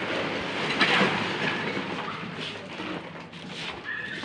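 A machine running with a steady rumble and rattle, with a louder rough scrape about a second in.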